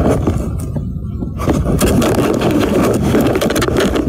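A hard plastic eyeglass case holding a recorder is scraped and knocked about, heard up close from inside the case as loud rubbing and rattling with many sharp clicks. It grows busier about a second and a half in.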